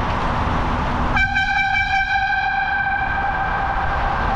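A single high-pitched tone starts suddenly about a second in and holds for about three seconds, its upper overtones fading while the main pitch carries on, over steady wind rumble on the microphone.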